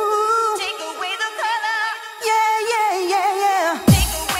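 1990s-style eurodance track in a DJ mix: a wavering vocal melody over synths with the drums dropped out. A deep booming hit comes in just before the end as the beat returns.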